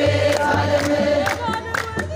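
A crowd singing an Ethiopian Orthodox mezmur (hymn) together in chorus, with hand claps keeping a steady beat.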